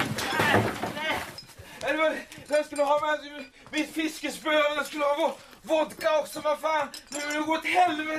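Clattering noise from something breaking dies away in the first second. Then a high-pitched voice makes a run of drawn-out, wordless vocal sounds, each held for about half a second to a second.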